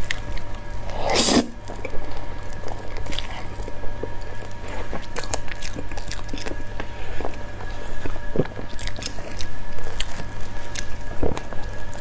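Eating sounds of durian mille crepe cake, picked up close for ASMR: mouth noises of biting and chewing soft layered cake and cream, with many small clicks and one louder noise about a second in.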